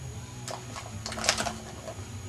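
Plastic ball clattering around a round track-style cat toy as a kitten bats at it: a click about half a second in, then a quick run of clicks past the middle, over a low steady hum.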